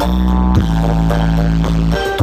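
Loud dance music played through the ME Audio truck-mounted speaker stacks of a sound-horeg system. In a break without drums, one long deep bass note is held and steps down in pitch about half a second in.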